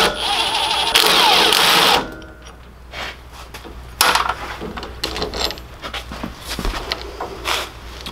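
Cordless drill-driver with a socket backing out the steering wheel's mounting bolts. The motor runs in two bursts of about a second each, then comes a series of lighter clinks and rattles of loose bolts and metal parts.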